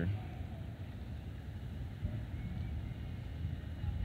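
Steady low outdoor rumble of background noise, most likely breeze on the microphone, with no distinct event standing out.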